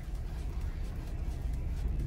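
Steady low hum of a Dacia Duster's engine idling, heard from inside the cabin while the steering wheel is turned to full left lock.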